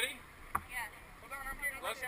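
Indistinct voices of people talking, with one sharp knock about half a second in.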